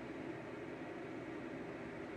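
Faint steady hiss of room tone, with no distinct event.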